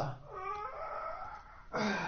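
A drawn-out, high-pitched wavering call lasting about a second and a half, followed near the end by a short, louder, rougher sound.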